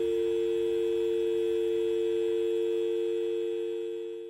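Telephone dial tone: two steady tones held without a break, fading out near the end. The line has gone dead after the call cut off.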